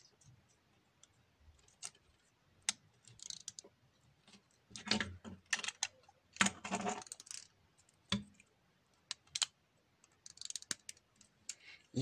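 Plastic LEGO plates and bricks clicking and rattling as they are handled and pressed together. The sharp clicks come in scattered clusters.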